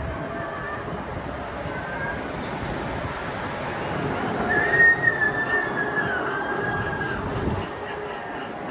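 Amusement ride running with a steady mechanical rumble, and a high, slightly wavering squeal lasting about two seconds starting just past the middle.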